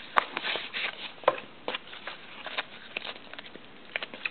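Irregular rustling and light clicks of a trading-card pack's wrapper and cards being handled as the cards are slid out of the pack.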